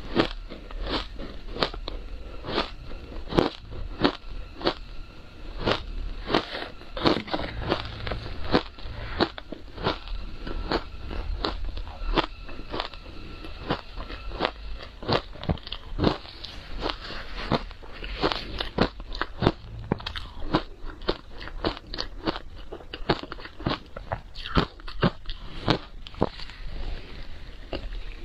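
Ice being bitten and chewed: a dense run of crisp crunches, several a second, with no pauses.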